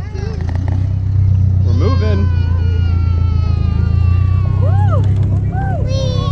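Tractor engine running steadily as it tows a hayride wagon, a constant low drone, with children's voices chattering briefly over it.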